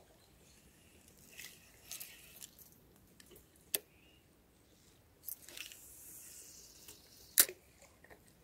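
Handling sounds of a fishing rod and spinning reel: scattered light rustles and a sharp click a little before the middle, a soft high rush in the second half, and the loudest sharp click near the end.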